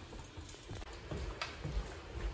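Soft footsteps walking across a hard indoor floor, with one faint click about one and a half seconds in.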